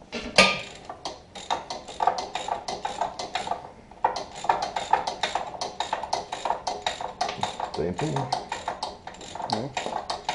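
A hand ratchet clicking quickly and steadily as a bolt or stud at a tractor's split joint is turned, with one sharp metallic knock just after the start.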